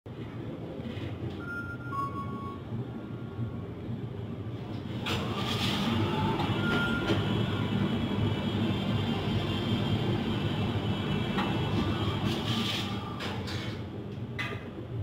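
Elevator arrival chime, a two-note falling tone, then the stainless steel landing doors sliding open about five seconds in and sliding shut again near the end, over a steady low machine hum.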